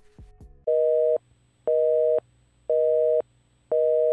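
Telephone busy signal of the North American kind: a steady two-note tone beeping on and off about once a second, four beeps starting just under a second in.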